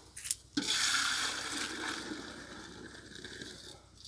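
Liquid herbal leaf decoction poured and splashing in metal vessels: a short click, then a pour starting about half a second in that is loudest at first and fades away over about three seconds.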